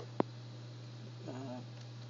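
A single sharp computer-keyboard key click just after the start, over a steady low electrical hum.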